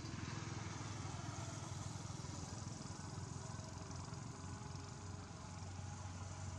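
An engine running steadily with an even low drone.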